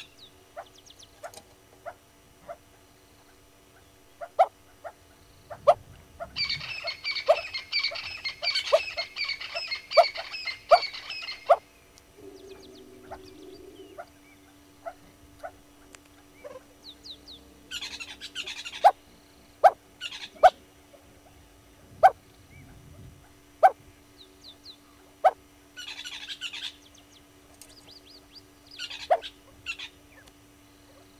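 Wild birds calling: a dense burst of chattering calls lasts about five seconds, with shorter bursts later. Sharp single clicks come every second or so throughout and are the loudest sounds. A low steady hum sets in about halfway through.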